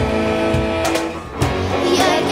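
Live amateur ensemble of violins, acoustic guitars and percussion playing a song: a held chord breaks off briefly a little past halfway, then the band comes back in on a low beat.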